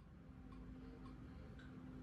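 Near silence after the music has faded out: a low steady hum and hiss, with faint, regular ticks about twice a second.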